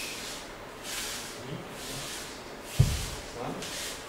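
Cloth swishing in short hissy bursts about once a second as two judoka in judo gis move through a slow kata on tatami, with one dull thump a little under three seconds in.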